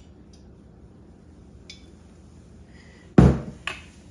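A glass bottle of olive oil set down on a hard counter: a quiet stretch, then one sharp knock with a short ring about three seconds in.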